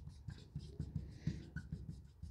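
Felt-tip marker writing on a whiteboard: a quick run of short, faint scratchy strokes as a word is written out.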